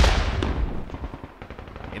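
A field gun firing once: a single loud blast, then a rumble that dies away over about a second and a half.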